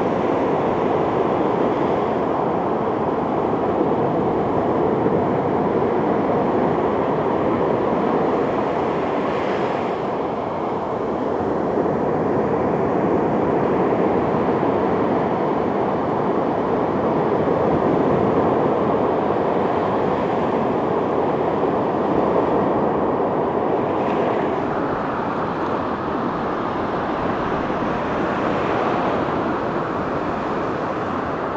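Ocean surf breaking and washing up on a sandy beach, a steady rush that slowly swells and eases, with a few brief brighter surges as waves break.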